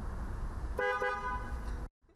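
Car horn sounding one steady two-tone honk of about a second, which cuts off suddenly.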